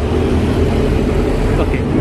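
Steady, loud low rumble with no distinct pitch or rhythm, with a brief spoken "okay" near the end.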